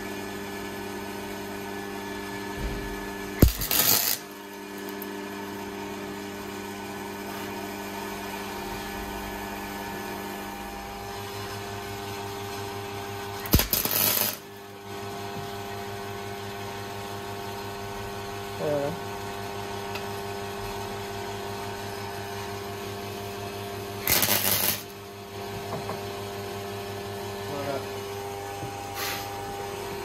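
MIG welder tack-welding a V-band exhaust flange: three short bursts of arc crackle, each under a second and about ten seconds apart, over a steady hum.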